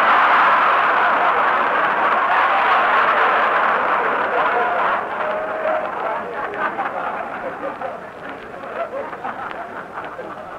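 Large live audience laughing, loudest at the start and slowly dying away over about ten seconds, with a voice or two showing through midway.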